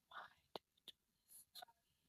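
Near silence with a few faint, short sounds: a soft puff of breath-like noise, then several small sharp clicks and a brief high hiss.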